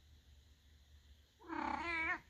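A domestic cat gives one drawn-out, wavering meow starting about one and a half seconds in, after near-silent room tone.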